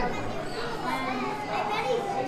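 Indistinct chatter of several overlapping voices, children's among them, in a busy restaurant dining room.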